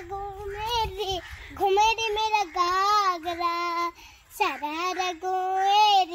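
A young girl singing alone, holding long notes that waver in pitch, in several phrases with a short break about four seconds in.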